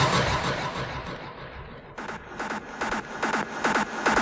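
Hard trance music in a breakdown: a wash of noise fades away over the first half, then a rhythm of short, sharp hits, about three or four a second, comes in about halfway through and builds.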